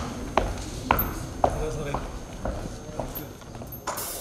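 Footsteps on a stage, sharp knocks about two a second, over low murmuring voices.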